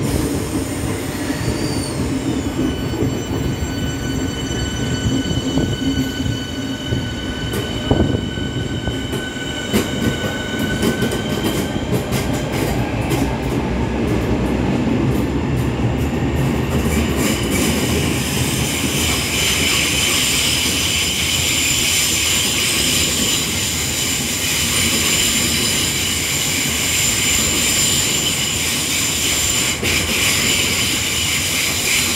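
Electric multiple-unit trains moving through the station. A steady electric whine runs through the first dozen seconds, with a run of clicks and clatter from the wheels about a third of the way in. In the second half a Southeastern Networker draws in along the platform with a continuous high-pitched wheel and brake squeal as it slows.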